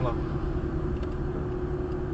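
Steady engine and tyre noise of a car driving, heard from inside the cabin, with a constant low hum.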